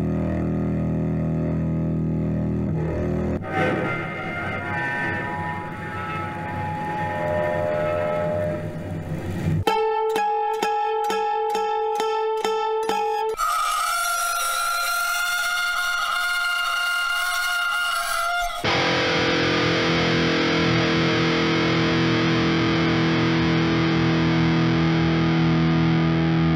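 Eerie bowed-string textures from a cello and an acoustic guitar played with a bow, in a run of separate takes that change abruptly. There are low held drones, then fast rhythmic pulses about ten seconds in, a high sustained tone, and a low held chord.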